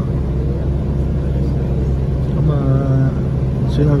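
Steady low rumble of a city bus's engine and road noise, heard from inside the moving bus. About two and a half seconds in, a man's voice holds one drawn-out sound for about a second.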